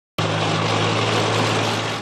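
Tracked armoured vehicle driving by with its engine running: a steady low engine drone under a loud, even rushing noise, cutting in abruptly a moment after the start.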